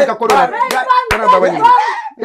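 Animated voices speaking over each other, punctuated by a few sharp hand claps near the start, around half a second in and just after a second.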